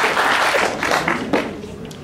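Audience applauding, tapering off toward the end.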